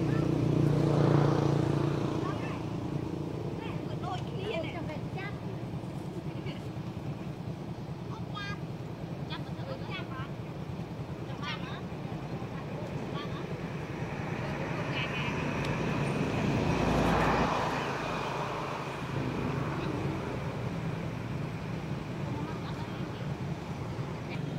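Steady low engine hum of vehicle traffic, swelling twice, about a second in and again around seventeen seconds, with faint high chirps scattered between.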